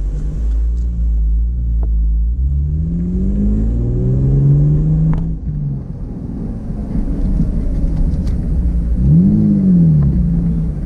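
Car engine heard from inside the cabin over steady low road rumble. Its pitch climbs for a few seconds under acceleration and falls away about five seconds in. Near the end there is a short rev that rises and falls.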